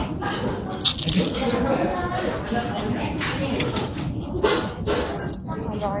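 Indistinct chatter of several voices in a large room, with a few short clinks of plates and cutlery; the sharpest comes about a second in.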